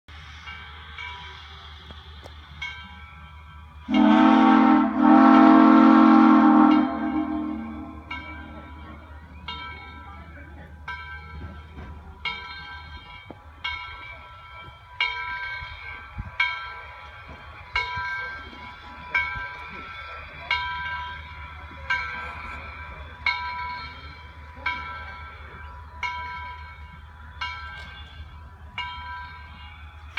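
Southern Railway 630, a 2-8-0 steam locomotive, sounding its steam whistle for about three seconds with a brief break, then ringing its bell steadily, about one stroke every 1.3 seconds, as it approaches a station platform.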